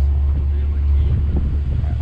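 Steady low drone of a car's engine and road noise heard from inside the cabin while driving, with wind buffeting the microphone.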